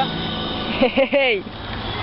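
A voice speaking briefly about a second in, over a steady background hum.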